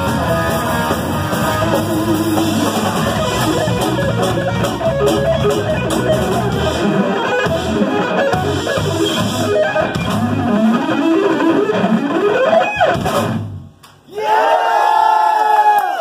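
Distorted electric guitar through Marshall amplifiers playing a fast neoclassical rock lead. The low accompaniment drops out about seven seconds in, leaving rising and falling guitar runs. After a brief near-silent gap near the end, a loud held note wavers up and down in pitch.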